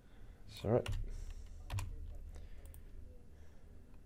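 A few scattered, separate keystrokes on a computer keyboard, as a date value is edited in a text field, over a low steady hum.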